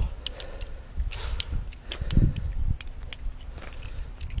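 Squid Industries Triton balisong trainer being flipped by hand: irregular metallic clicks and clacks, a few each second, as the aluminium handles and the steel trainer blade swing around the pivots and strike each other. A low rumble runs underneath.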